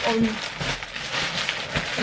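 A large plastic mail-order bag crinkling and rustling as it is lifted and handled, an irregular crackle of plastic.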